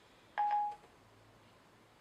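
iPhone 5 Siri's short beep: a single steady tone lasting under half a second, about half a second in, as Siri stops listening when its microphone button is tapped.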